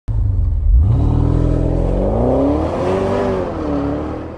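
Car engine revving: it cuts in suddenly, climbs quickly in pitch about a second in, then swells up and falls back before starting to fade.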